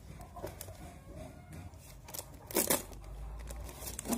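Plastic label being torn and peeled off an empty Aqua plastic water bottle, the thin bottle crinkling in the hands, with scattered crackles and one louder crackle about two and a half seconds in.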